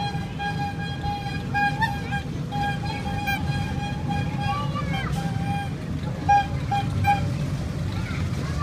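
Kiddie truck ride rolling along its track with a steady low rumble, while a simple tinny tune plays in repeated short notes. A brief voice-like rising and falling sound comes about five seconds in.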